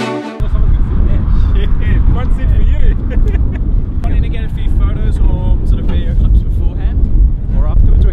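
Wind buffeting the camera microphone, a loud uneven low rumble, with voices talking indistinctly over it. A music track cuts off just at the start.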